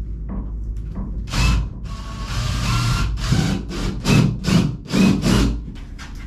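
Cordless drill/driver driving screws into a plywood wall panel in a series of short bursts, with one longer run, its motor whining under load.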